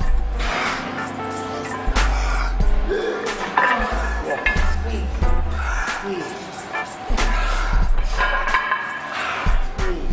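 Music with a heavy bass line, with voices in the background and a few sharp knocks, like weights being handled in the gym.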